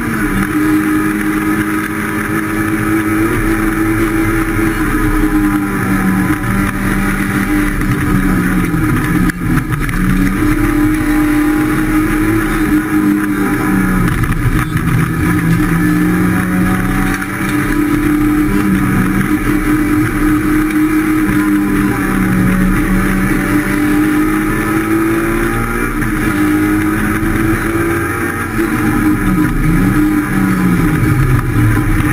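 Rally car's engine heard from inside the cabin on a flat-out stage run, its pitch climbing through each gear and dropping sharply on lifts and downshifts several times.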